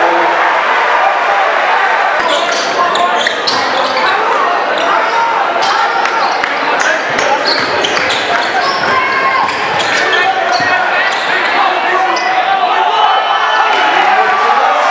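Gym sounds of a basketball game: a ball bouncing on the hardwood court and sneakers squeaking, over steady crowd chatter echoing in the hall.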